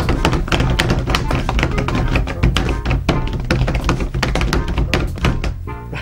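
Several pairs of hands drumming rapidly on a wooden tabletop as a drum roll, a dense run of quick slaps and thumps with a low table resonance under them.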